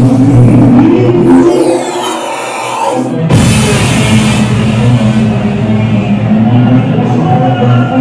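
Psytrance played loud through a club sound system, with a driving bass line. About two seconds in the bass drops out under a sweeping effect, and the full beat crashes back in a little after three seconds in.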